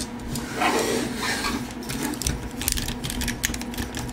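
Plastic action figure being handled, then from about two seconds in a rapid run of soft ratchet clicks as the shoulder joint of a WeiJiang MPM04 Optimus Prime figure is rotated.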